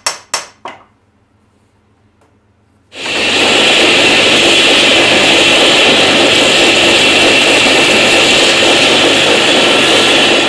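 A few sharp knocks at the very start, then, about three seconds in, a belt grinder starts grinding steel with a loud, steady, hissing rasp of abrasive belt on metal that throws sparks.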